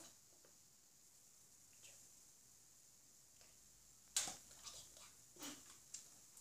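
Near silence for about four seconds, then a sharp click and a few softer clicks and rustles as a saxophone is handled and lifted from the lap into playing position on its neck strap.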